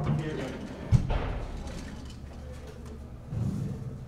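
People's voices in a large echoing room, with one sharp thump about a second in.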